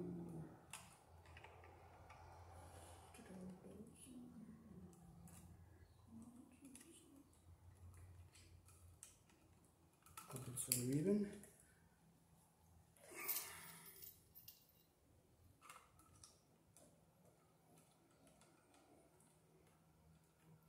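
Faint, scattered clicks and snips of wire strippers and crimpers working copper ground wires at a metal electrical box. A man's low voice runs through the first half, and a brief louder rustling rush comes about two-thirds of the way in.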